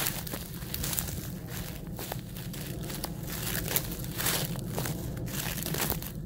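Dry wheat stubble crunching and crackling underfoot in uneven surges, close to the microphone.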